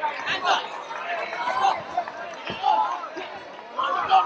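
Several voices shouting over one another at a live cage fight, the unintelligible yelling of cornermen and crowd, with a couple of sharp thuds from the fight.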